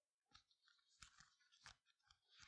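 Near silence, with a few faint, short clicks about a third of a second, one second and near two seconds in.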